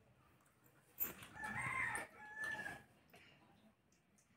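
A rooster crowing once, about a second in, for roughly two seconds, in two linked parts.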